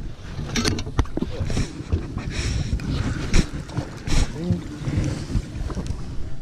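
Scattered knocks and clatter of gear being handled on a small fishing boat's deck, over wind noise on the microphone and a low rumble. A short voice sound comes about four and a half seconds in.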